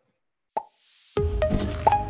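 A short pop and a rising whoosh, then an outro jingle starts just past halfway: music with a deep bass and short, sharp-starting high notes.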